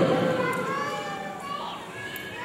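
Children's voices calling and chattering in the hall, heard after a man's speech breaks off at the start.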